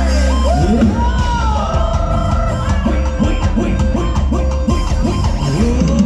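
Loud Thai ramwong dance music from a live band through a stage PA, with a gliding, bending lead melody over a steady bass.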